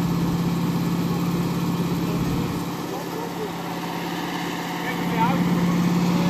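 Portable fire-brigade motor pump engine running steadily, with a constant hum, while drawing water through a suction hose. It is slightly quieter through the middle and comes back up near the end.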